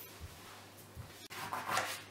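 Quiet handling noises on a kitchen worktop: a couple of soft bumps, then a brief rustle about one and a half seconds in.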